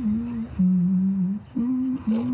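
A voice humming a slow wordless tune in three held notes that step down and then up, with short breaks between them.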